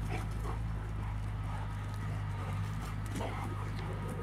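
Cane corso dogs running and lunging on bare dirt, paws padding and scuffing, over a steady low hum.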